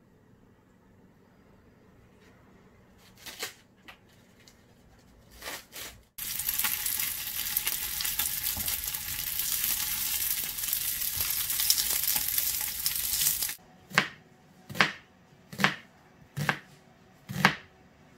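Flat dumplings sizzling in an oiled frying pan, a steady hiss that starts suddenly about six seconds in and stops suddenly about seven seconds later. Then a kitchen knife chopping an onion on a plastic cutting board, five strokes about a second apart.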